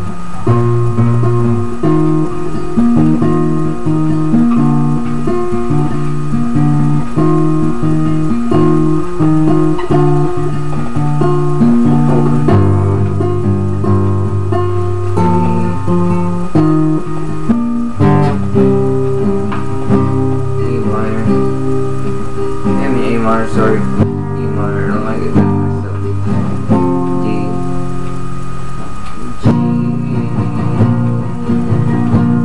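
Nylon-string classical guitar fingerpicked in a steady run of arpeggiated chords over changing bass notes.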